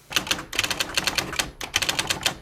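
Typewriter keystroke sound effect: a rapid run of sharp key clacks, several a second, with a brief pause a little past the middle.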